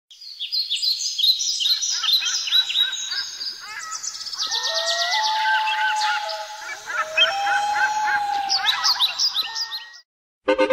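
Several birds chirping and singing at once, a dense chorus of quick chirps and longer whistled notes that cuts off abruptly near the end.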